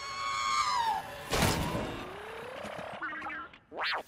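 R2-D2 droid sound effects: a held electronic whistle that bends down and stops about a second in, a sudden crash-like burst with a falling whistle after it, then rapid warbling beeps and a quick rising sweep near the end.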